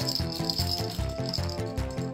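Blue plastic cat-toy ball with a rattle inside, rattling during the first second and a half as a cat paws and noses it, over background music with a steady beat.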